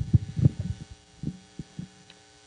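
Handling noise from a handheld microphone being passed from hand to hand: a quick run of low thumps in the first half-second, then a few scattered bumps. A steady low hum from the sound system runs underneath.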